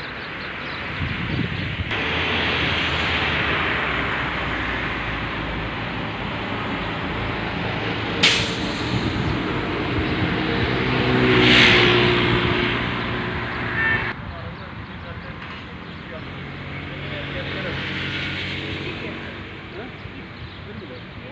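Road traffic passing close by, swelling and fading; about eight seconds in comes a short sharp hiss, and around the middle a heavy vehicle goes past with a louder rush and a steady low engine hum that cuts off suddenly a few seconds later.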